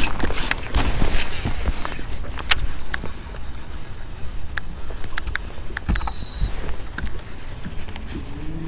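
Baitcasting reel being cranked as a swim jig is retrieved, with scattered small clicks and knocks from handling the rod and reel. A low rumble of wind on the microphone runs underneath.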